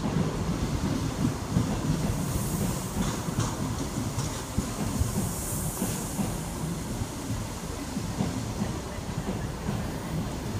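InterCity 125 High Speed Train's Mark 3 coaches rolling past close by into the platform: a steady wheel rumble with rapid clattering knocks over the rail joints, getting a little quieter as the train runs in to stop.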